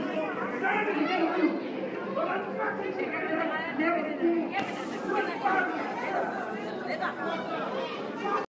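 Crowd of people talking over one another, a dense babble of many voices with no single clear speaker. A brief hiss-like noise cuts in about halfway through.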